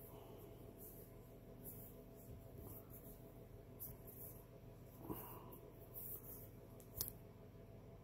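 Faint handling sounds of a wristwatch strap being fastened: soft rubbing and a few small clicks as the band is worked toward its second hole, over a low steady hum.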